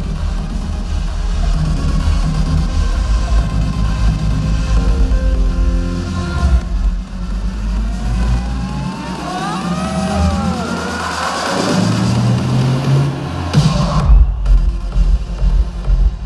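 Live electronic dance music over an arena sound system, heavy on the bass. About six and a half seconds in the bass drops out for a breakdown with gliding synth tones and a rising noise sweep, and the pounding beat comes back in about fourteen seconds in.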